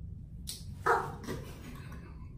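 A short, loud, bark-like burst of stifled laughter a little before one second in, followed by quieter broken laughing.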